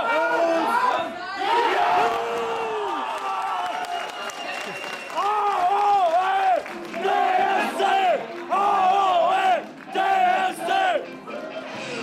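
Fans cheering a goal: loud shouting at first, then a group of voices chanting in a repeated rhythm.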